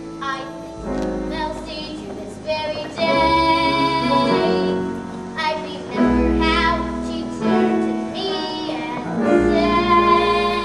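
A young girl singing a solo show tune with vibrato over live instrumental accompaniment, in phrases that grow louder from about three seconds in.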